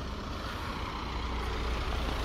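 Low vehicle rumble under a steady hiss of road noise, growing slowly louder.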